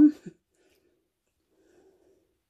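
A spoken word trailing off, then near silence with only a faint low murmur.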